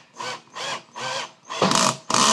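Cordless drill driver screwing a plastic anchor into drywall, run in short pulses about twice a second. Near the end comes a louder burst as the anchor seats and the drill's clutch slips so the bit stops turning.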